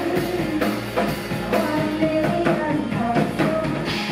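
Live rock band playing: a woman singing lead over a drum kit keeping a steady beat.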